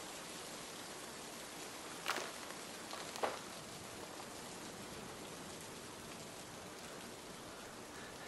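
A steady, even hiss, with two brief soft sounds about two and three seconds in.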